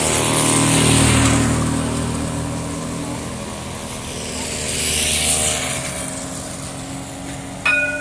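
A light-rail tram rolling slowly through a junction: its electric drive gives a low, steady hum, with a rushing hiss that swells twice.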